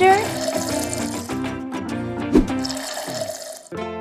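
Water pouring from a small plastic bottle into a plastic cup, a steady splashing that stops a little before the end, over background music.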